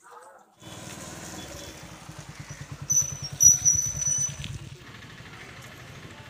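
A small engine running steadily with a rapid, even low pulse, starting abruptly. A high, thin whistling tone sounds briefly near the middle.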